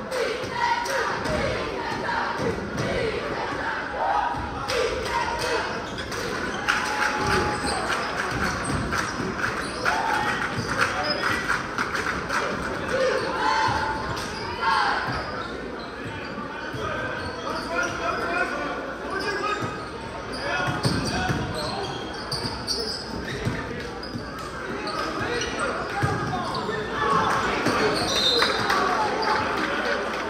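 Crowd voices and shouts in a large school gymnasium during a basketball game, with a basketball bouncing repeatedly on the hardwood court.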